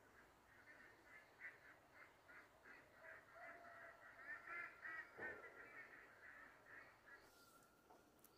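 Faint bird calls repeated quickly, about three a second, rising to their loudest in the middle and stopping about a second before the end.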